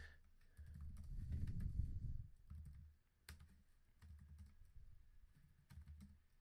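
Typing on a computer keyboard: scattered keystrokes, one sharper click about three seconds in. A low muffled rumble fills roughly the first two seconds.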